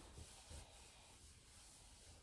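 Near silence, with faint rustling of bedclothes and a couple of soft low thumps in the first second.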